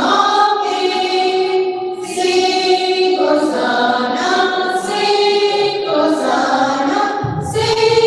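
A choir of women teachers singing a song together in long held notes. A lower sound joins the singing near the end.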